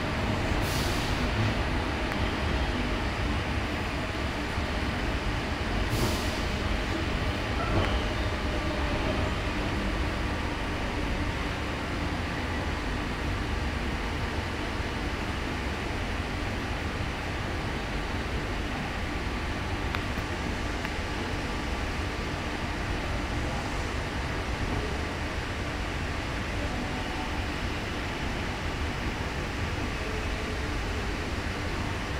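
Passenger train running, a steady low rumble heard from inside the carriage, with two short high hisses about a second and about six seconds in.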